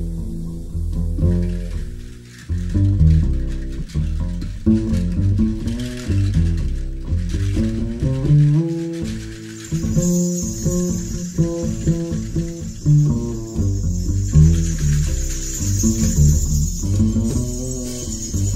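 Jazz double bass played pizzicato, a walking line of plucked low notes. Soft drum-kit accompaniment comes in with a steady cymbal wash about ten seconds in.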